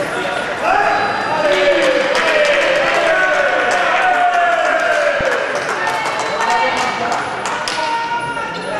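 Drawn-out shouting and cheering voices after a touch is scored in a foil bout, with light clicks scattered through.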